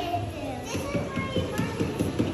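Children's voices and background chatter in a room, softer than the talk around it, with a few short taps.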